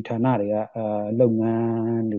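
A man's voice speaking Burmese in a radio news broadcast, in long, nearly level-pitched stretches with short breaks.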